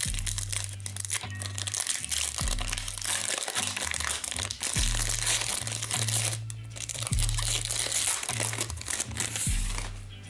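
Background music with a deep bass line, over the crinkling of a foil trading-card pack wrapper and cards being handled.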